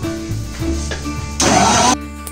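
Electric mixer grinder blending a banana shake: its motor bursts on loudly about one and a half seconds in and runs for about half a second before cutting off suddenly, over background music.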